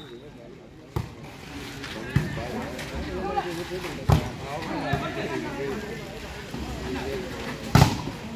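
Volleyball being struck during a rally: sharp smacks of hands on the ball about a second in, two seconds in and four seconds in, with the hardest hit near the end, as a spike meets the block. Spectators' and players' voices chatter underneath.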